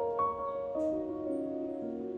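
Soft background piano music, slow notes struck one after another and left ringing over each other.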